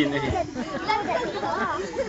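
Several people talking at once in low chatter, with no single clear speaker.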